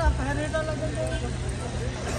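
Background voices talking over a steady low hum and rumble, with the voices clearest in the first second.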